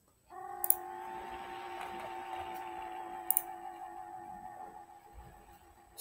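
Two sharp computer-mouse clicks, about two and a half seconds apart, over a steady hum of several fixed pitches that fades away near the end.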